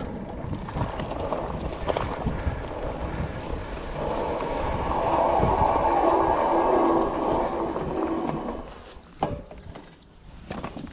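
Fat-tyre eBike rolling over a loose chalk-gravel track: a continuous crunching rumble with rattles from the bike. About four seconds in it grows louder and a steady hum comes in, then it fades about nine seconds in, with a couple of short knocks.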